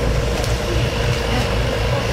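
Steady loud low rumble of outdoor background noise, with no clear events standing out.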